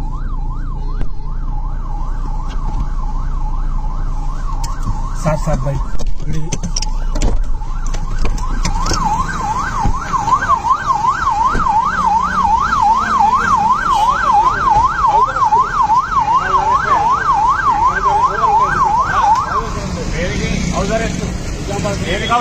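Police vehicle siren in a fast warbling yelp, rising and falling about three times a second. It fades out a few seconds in, comes back loud for about ten seconds, then stops, with traffic and engine rumble underneath.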